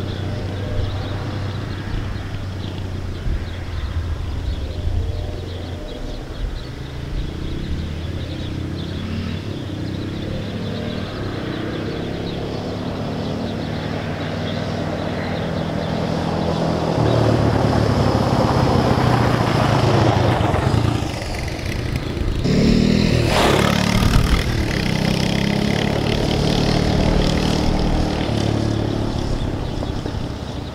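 Small ATV engine running as it is ridden along a gravel driveway, the pitch rising and falling with the throttle. It grows louder from about halfway through, with a loud rush of noise as it passes close about three quarters of the way in, then keeps running steadily.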